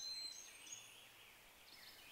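Near silence: faint outdoor ambience, with a few faint high chirps in the first half second.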